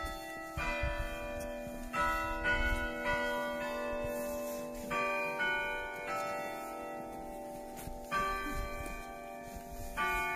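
Church bells ringing: single strokes of several bells at different pitches, roughly one every half second to second, each ringing on and overlapping the next, with a pause of about two seconds a little past the middle.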